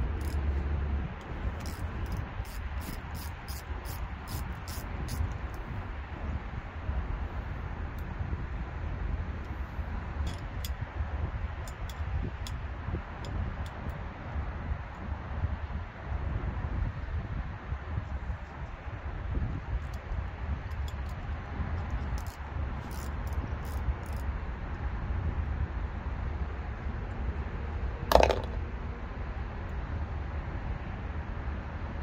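Socket ratchet clicking in short runs of light, evenly spaced clicks, about four a second, as a bolt is worked, over a steady low outdoor rumble. One loud sharp metallic clank near the end.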